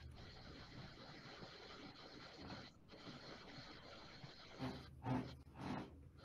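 Faint steady background hiss with soft handling noise from a braille notetaker held in the hands, and a few brief soft sounds near the end.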